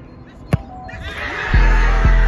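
A football kicked for a penalty: one sharp thud about half a second in. Shouting and cheering follow as the ball goes in, over background music whose heavy bass beat comes in near the end.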